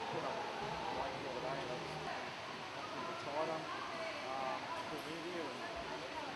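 Indistinct chatter of people talking in a gym, over steady room noise; no words are clear.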